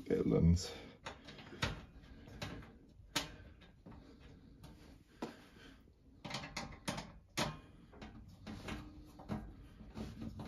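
Irregular clicks and knocks of screws being driven back into the washer dryer's housing with a hand screwdriver, with parts knocking as they are handled.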